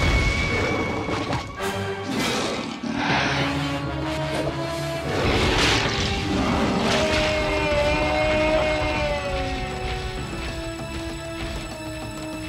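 Cartoon orchestral score with held notes, broken by several sudden crash and impact effects. The loudest come near the start and around six seconds in. The music carries on alone, a little quieter, toward the end.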